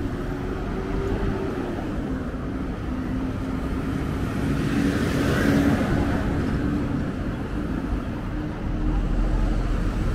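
Road traffic on a city street: a steady hum of engines and tyres, with one vehicle passing close and loudest about five to six seconds in.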